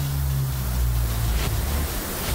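Background music in a sparse passage: a low bass note held steadily under a noisy hiss, without a beat.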